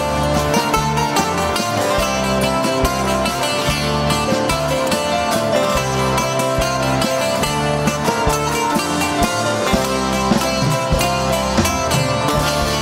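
Live band playing an instrumental passage with no singing: strummed and plucked acoustic guitars with a bouzouki melody over a bass line and a steady beat.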